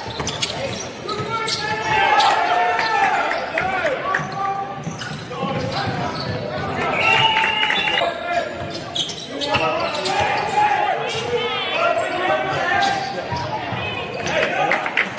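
Live basketball game sound in a gym: a ball bouncing on the hardwood court amid players' voices and calls.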